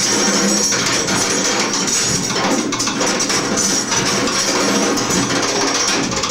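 Free-improvised drum kit playing: a loud, dense clatter of drums and cymbals with no steady beat.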